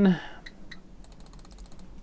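Computer mouse clicking faintly: two separate clicks, then a quick run of small ticks about a second in.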